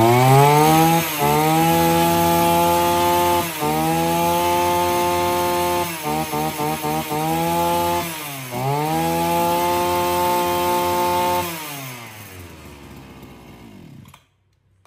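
Two-stroke engine of a Fukiwa FW330 brush cutter running on a test start, revved up and down several times with a run of quick throttle blips in the middle. It then winds down and stops near the end.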